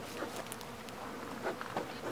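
Honeybees buzzing faintly and steadily around an open hive that is being smoked.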